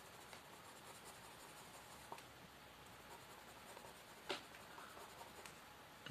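Faint scratching of a coloured pencil shading on a paper workbook page, with a short soft tap about four seconds in.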